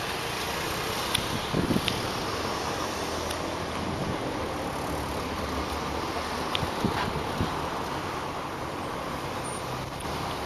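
Street traffic at a city intersection: cars passing, a steady noise with a few brief faint clicks now and then.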